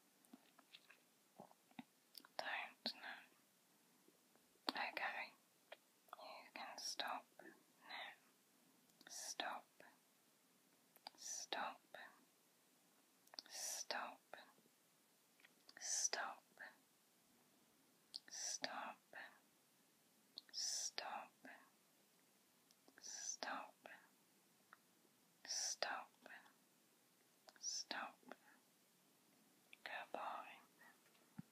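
Faint whispering in short phrases, one about every two seconds, about a dozen in all.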